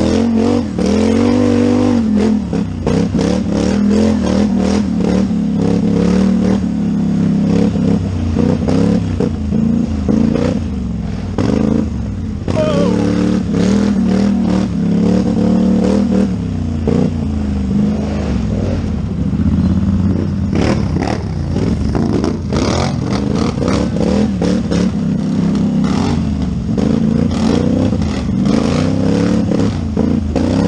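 Polaris Scrambler 4x4 quad's engine at race pace, revving up and dropping back again and again as the rider accelerates and backs off between turns. Knocks and rattles of the machine over rough ground run through it.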